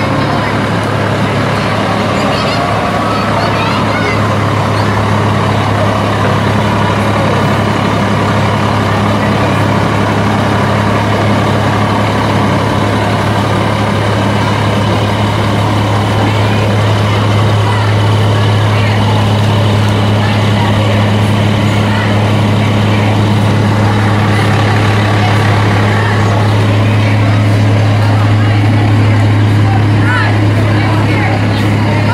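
Fire engine's diesel engine running at low speed as the truck creeps past, a loud steady low hum that grows a little louder toward the end.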